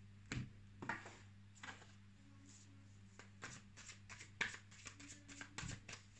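Tarot cards being handled and laid on a table: a few light taps, then a quicker run of soft flicks and taps of cards from about three seconds in. Quiet throughout.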